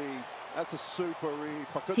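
Faint sound of a basketball game broadcast: a voice talking low under it and a basketball being dribbled on a hardwood court, a few short knocks.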